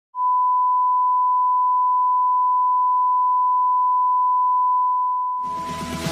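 A single steady pure tone, like a test-tone beep, held for about five seconds and fading out near the end as electronic music comes in.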